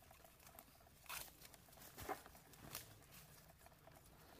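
Faint rustling and handling of plastic-wrapped medical gear and straps, with a few short crackles.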